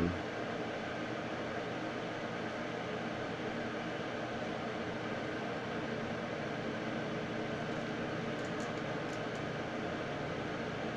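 Steady room-tone hiss with a low hum, and a few faint clicks near the end.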